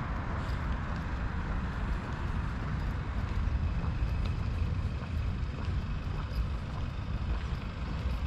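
Steady road-traffic ambience: a low, continuous rumble of vehicles on the road, with no single event standing out.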